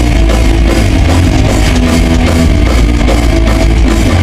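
Thrash metal band playing live at full volume: distorted electric guitars, bass and drum kit in a dense, steady wall of sound.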